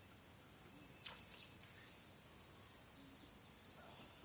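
Faint outdoor river ambience near silence, with two soft clicks about a second apart and then a short run of faint, high, falling chirps like small birds calling.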